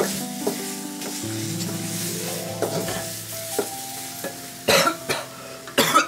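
A metal spoon stirring and scraping in a steel pot of food sizzling on a gas stove, over music with held notes. Near the end come two loud coughs.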